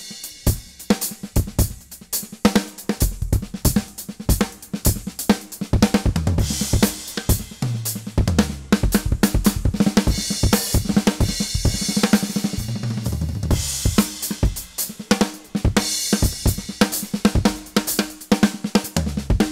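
Drum kit playing a busy funk groove built on diddles, with snare, bass drum and hi-hat strokes and a cymbal wash every few seconds.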